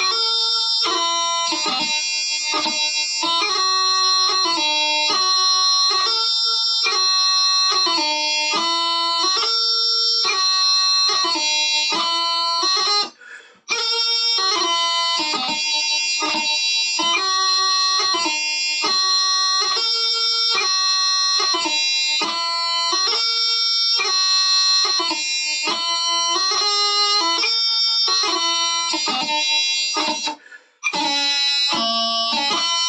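Bagpipe practice chanter playing a strathspey melody, the notes broken by quick grace-note ornaments, with no drones. The playing stops briefly about thirteen seconds in, then carries on.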